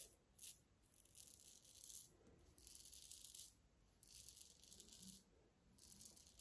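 Paradigm Diamondback safety razor scraping through lathered stubble on the cheek: a faint rasp in about five short strokes, each up to a second long, with brief pauses between.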